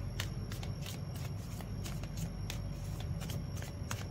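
Tarot deck being shuffled by hand: a steady run of light card clicks, about five a second.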